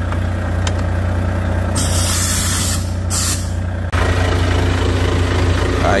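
Compressed air hissing in two loud bursts, about two and three seconds in, cutting off abruptly, as a truck's air-brake hose coupling is connected to the trailer. A truck engine idles steadily underneath.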